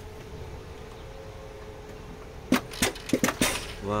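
Electric turbocharger actuator on an IVECO Stralis, its rods unhooked from the turbo, working on ignition-on: a quick run of sharp mechanical clicks about two and a half seconds in, over a faint steady hum. Freed from the seized turbo flap, the actuator moves normally, a sign that the actuator itself is good.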